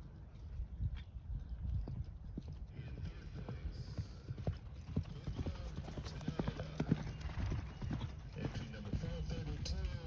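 Hoofbeats of a horse moving over a sand dressage arena, a run of soft, irregular thuds that grow louder about midway as the horse passes close by.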